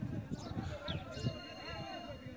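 Faint voices of people in the distance, with scattered low thumps.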